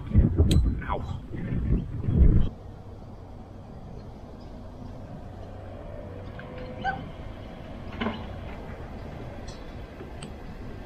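Loud rumbling wind and handling noise on the microphone that cuts off abruptly about two and a half seconds in, followed by a faint, steady outdoor background with a couple of brief faint sounds.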